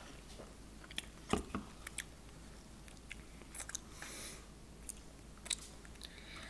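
Faint sips and swallows from a drinking can, heard as a scatter of small clicks and soft gulps.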